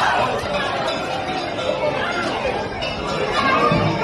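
Many voices talking and shouting over one another: a crowd in a street confrontation with riot police, recorded on a phone.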